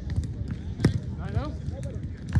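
A volleyball struck once with a sharp slap a little under a second in, with people's voices around it.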